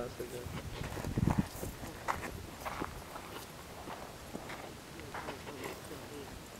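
Close rustling in dry grass and soil with a few scattered soft clicks. About a second in there is a short low rumble of handling on the microphone.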